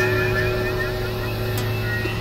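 Experimental electronic drone music: a steady low hum under a held middle note, with warbling higher tones above.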